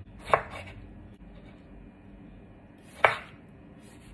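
Kitchen knife cutting through a tomato and knocking on a wooden cutting board, twice, about three seconds apart.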